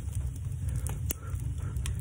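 Log fire burning in a wood stove with its door open: a handful of sharp crackles over a steady low rumble.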